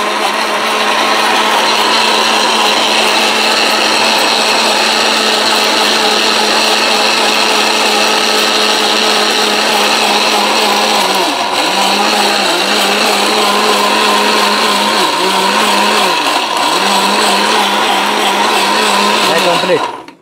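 ORPAT electric mixer grinder running steadily, its motor spinning a stainless-steel jar of ginger, garlic and water into a paste. The motor's pitch dips briefly a few times as the load shifts, and the motor cuts off right at the end.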